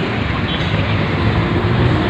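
Street traffic noise with a motor vehicle's engine running nearby, a steady low hum under a continuous rush.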